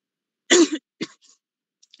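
A person clears their throat: one short, rough burst about half a second in, then a smaller catch a moment later.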